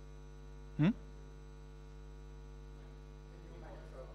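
Steady electrical mains hum, with a man's short questioning "hmm?" about a second in.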